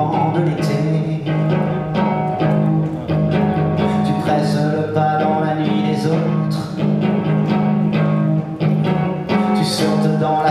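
A live French chanson being performed. The accompaniment holds long low notes under plucked notes, and a male voice sings over it.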